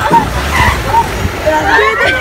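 Riders on a swinging pirate-ship ride shouting and screaming, with rising and falling cries bunched near the end, over a steady low rumble.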